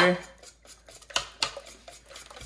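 Wire whisk clinking and scraping against a ceramic mixing bowl as thin crepe batter is beaten, with two sharper knocks a little past halfway.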